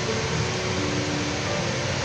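Soft background music with a few long held low notes over a steady rushing noise.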